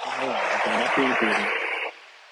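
A loud burst of static-like hiss laid over a man's speech, starting and stopping abruptly and drowning out his words.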